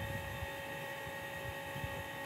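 Electric desk fan running: a steady hum and hiss with faint constant whining tones.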